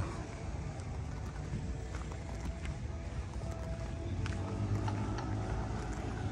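Outdoor background noise: a steady low rumble, with faint indistinct tones joining in during the second half.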